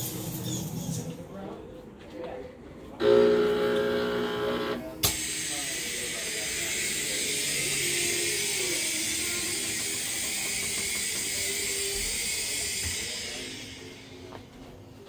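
A sudden loud, buzzing horn-like scare tone for about two seconds, cut off by a sharp click, followed by the steady high hiss of a fog machine jetting fog for about eight seconds, fading away near the end.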